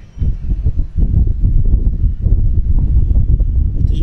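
Wind buffeting the stage microphone: a loud, irregular low rumble that comes in gusts.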